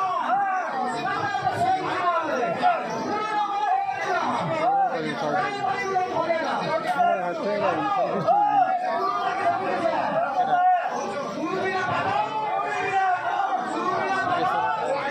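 Several men's voices talking at once in overlapping chatter.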